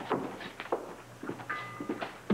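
A series of light footsteps and knocks on a wooden floor as things are moved about, with a brief steady high tone about one and a half seconds in.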